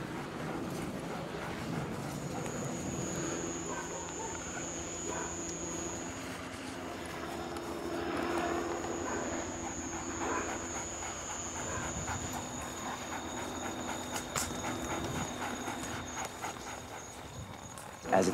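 Police dogs panting during a search, over a steady high-pitched tone and a low steady hum.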